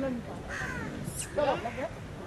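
Crow cawing, a few harsh calls about half a second in and again around a second and a half in.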